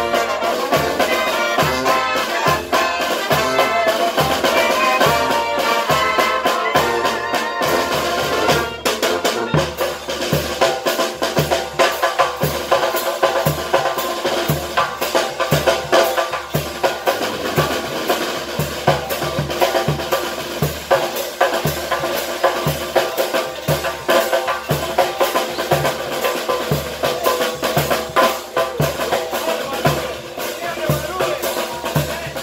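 A small brass band of trombones, trumpets, clarinets, sousaphone and snare drum playing a lively tune. About nine seconds in the full horn melody thins out, and the drums keep a steady beat under lighter horn parts.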